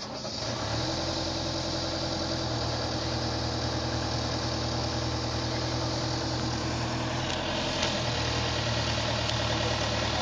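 Genie boom lift's engine starting up and settling into a steady idle.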